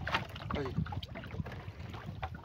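Wind buffeting the microphone as a low, steady rumble over choppy water in an open wooden canoe, with a few faint knocks.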